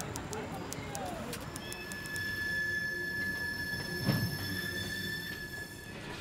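Freight train wheels squealing on the rails: a steady high screech of several held tones that sets in about a second and a half in, over faint voices, with a single low thump a little past the middle.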